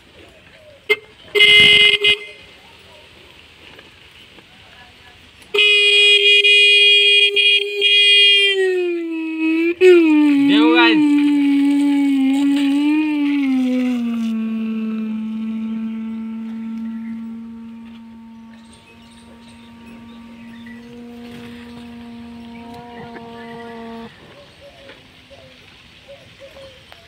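Small electric horn powered by a battery: a short honk, then a long steady honk that drops in pitch and wavers as the horn is lowered into water. It keeps sounding lower and quieter under water, then cuts out suddenly near the end, the horn dying once submerged.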